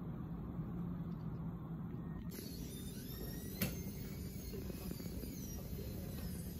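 Steady low room hum and background noise. About two seconds in the background changes abruptly, and a single sharp click is heard a little past halfway.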